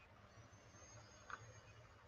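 Near silence: faint room tone with a low steady hum and a thin high whine in the first half, the noise the speaker takes for her computer overheating.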